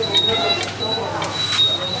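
Indistinct voices and chatter in a busy room, with a thin high electronic tone sounding on and off several times.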